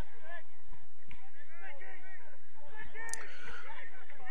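Football players' voices calling and shouting across the pitch during play, several overlapping short calls, with a few soft thuds.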